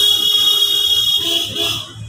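A horn sounding: one loud, steady, high-pitched tone lasting nearly two seconds, cutting off shortly before the end.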